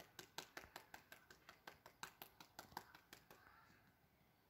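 A rapid series of faint, sharp clicks, about six a second, stopping a little after three seconds in.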